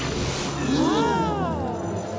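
Cartoon sound effect for a ghost flying upward: a pitched, zooming glide that rises and then falls, lasting about a second.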